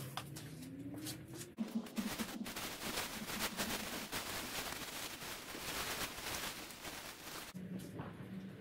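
Plastic shopping bag rustling and crinkling as it is handled, starting about a second and a half in and stopping shortly before the end.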